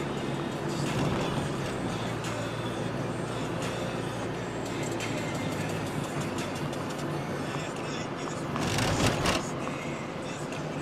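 Road and engine noise of a car being driven, heard from inside the cabin, with a short loud rushing burst about nine seconds in.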